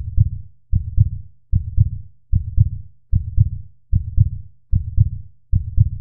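Heartbeat sound effect: a steady lub-dub of low double thumps, eight beats about 0.8 s apart (around 75 beats a minute).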